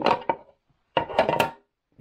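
Hard plastic display case being opened: a short cluster of sharp clicks and knocks about a second in as the clear lid is worked off its base.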